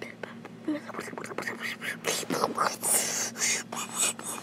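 A person whispering, with breathy hissing bursts that grow louder in the second half, over a steady low hum.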